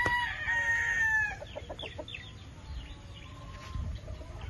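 A gamecock rooster crowing: the long held final note of the crow fades with a slight fall about a second and a half in, followed by a few short clucks.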